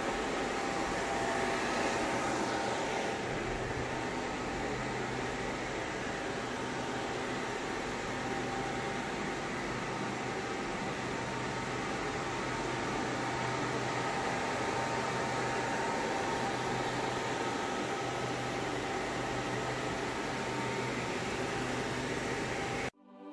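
Steady whirring hum of running fans, with a few faint steady tones in it.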